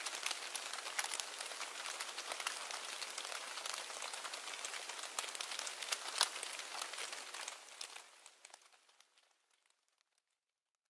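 Blizzard ambience: a steady hiss crowded with small ticks of blown snow striking, fading out over the last two seconds or so.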